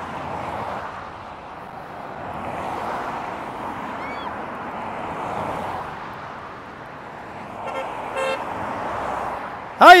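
Cars passing on a multi-lane road, their tyre and engine noise swelling and fading as each goes by. About eight seconds in, a car horn gives a short honk.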